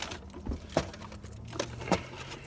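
Paper fast-food packaging being handled, giving a few light clicks and crinkles, the sharpest just before the middle and again near the end.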